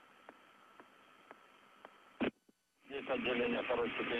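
Faint hiss of a live communications feed with a steady thin tone and soft ticks about twice a second. About two seconds in there is a loud click and a moment of dead silence, then a voice comes in over a thin, radio-like mission-control loop.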